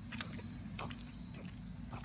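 Steady high-pitched insect chorus of a summer evening, with soft footsteps about every half second to second.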